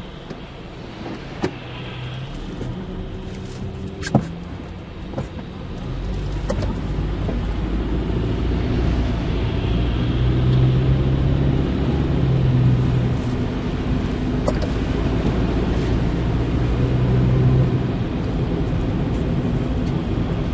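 Car heard from inside the cabin. For the first few seconds it sits quietly in traffic, with a few sharp clicks. About six seconds in it pulls away, and engine hum and road rumble from the snowy, slushy road grow louder and swell as it gathers speed.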